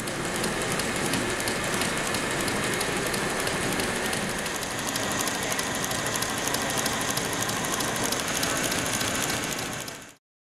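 Industrial sewing machine running at speed, its needle mechanism clattering rapidly and evenly as it stitches an embroidered appliqué onto heavy velvet.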